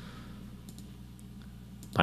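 A few faint, separate computer mouse clicks over a steady low hum.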